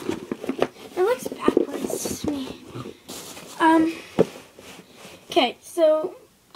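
A cardboard shoebox handled close to the microphone, with knocks and rustling in the first second or so. A girl's voice makes short wordless sounds a few times.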